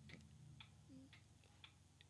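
Near silence with four faint, short clicks, roughly one every half second.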